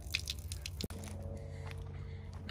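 Light clicking and crinkling as a cracked plastic coolant reservoir is turned over in gloved hands. The noise stops abruptly about a second in, leaving only a faint steady hum.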